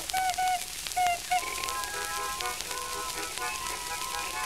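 A racket of children's toy horns: short tooted notes, then several held notes sounding together, with light clicks and taps. It is heard through the hiss and crackle of an early phonograph recording.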